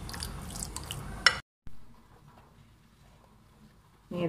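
A plastic spoon stirring and scraping through wet marinated chicken in a glass bowl, with a sharp click against the bowl about a second in. The sound then cuts off suddenly, leaving only faint room tone.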